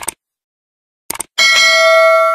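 Subscribe-button animation sound effects: a short click at the start, a quick double click about a second in, then a bright bell chime that rings on with several clear steady tones.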